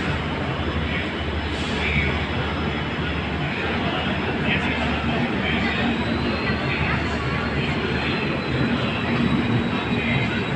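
Indian Railways LHB passenger coaches of an express train running past close by: a steady rumble and rush of wheels on rails, with a faint high whine.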